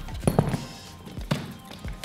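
A few knocks and clicks as a Think Tank rolling camera case is handled and its telescoping handle pulled up, over background music.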